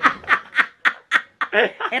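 An elderly woman laughing in quick breathy bursts, about four a second.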